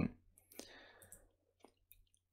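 A few faint, sparse clicks of computer keyboard keys as code is typed, with a soft brief hiss about half a second in.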